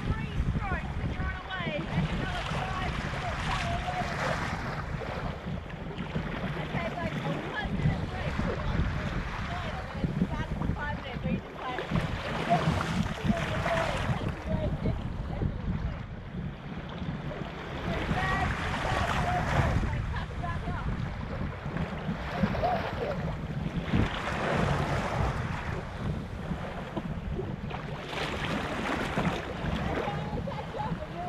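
Wind buffeting the microphone over choppy sea water rushing and splashing against a sea kayak as it is paddled, with irregular louder surges of splashing every few seconds.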